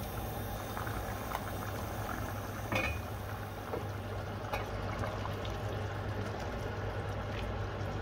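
Chicken curry bubbling as it simmers in a pot on a gas stove, over a steady low hum. A brief clack comes about three seconds in.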